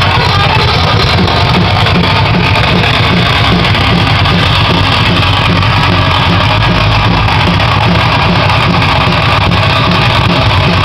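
Live metal-punk band playing loud, close up: electric guitar and a drum kit with cymbals, one dense, unbroken wall of sound.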